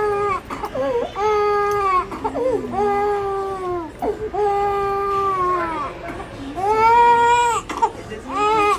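A baby crying hard while having her ears pierced: a string of about five long wails, each about a second, with quick catches of breath between. The loudest wail comes near the end.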